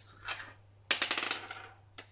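Small dice thrown and clattering to a stop: a sudden quick run of hard clicks about a second in that dies away within about a second.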